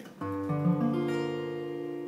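Acoustic guitar with a capo on the third fret: a single E minor 7 chord strummed slowly down from the low E string. The strings sound one after another over about the first second, then ring on together.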